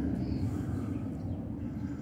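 Steady low rumble of distant jet aircraft coming in toward an airport, with no distinct event.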